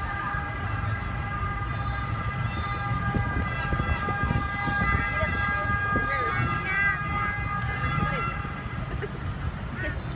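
Outdoor city noise: a low rumble of traffic with a steady, high, horn- or siren-like tone that holds for several seconds and fades out near the end. Faint voices come and go.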